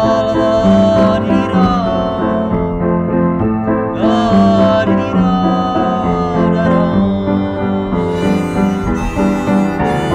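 Grand piano playing a chordal accompaniment, with a harmonica joining in near the end.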